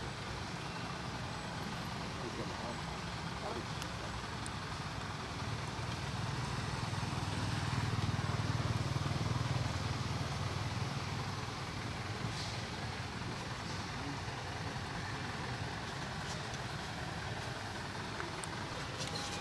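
Steady outdoor background noise, with a low engine rumble from a passing vehicle that swells through the middle and then fades.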